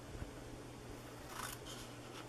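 Small scissors snipping into scored cardstock, faint, with one clearer snip about one and a half seconds in.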